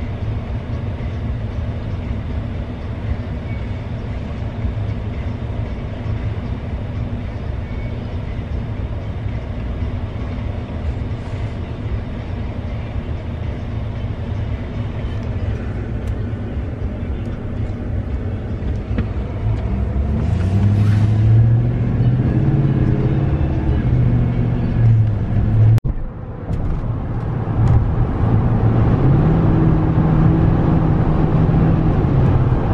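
Steady low rumble of road and engine noise inside a moving car's cabin. About two-thirds of the way in it grows louder, with a low hum that rises and falls, and it briefly cuts out near the end.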